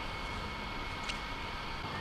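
Quadcopter drone's motors and propellers spinning at idle on the ground, warming up before takeoff: a steady whir.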